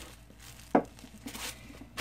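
Plastic packaging crinkling as a clear bag of sequins is handled, with one sharp knock about three quarters of a second in as something is set down on the table.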